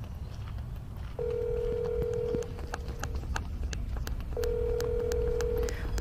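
Telephone ringback tone, as heard by the caller while the call has not yet been answered: two steady single-pitch beeps, each a little over a second long and about three seconds apart, over low background noise.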